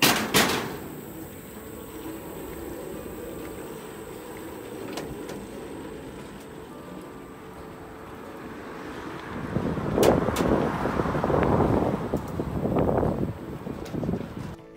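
A bicycle being ridden across a pedestrian bridge. Two sharp knocks come at the start, then a steady rolling noise that swells into a louder rumble for the last four seconds or so.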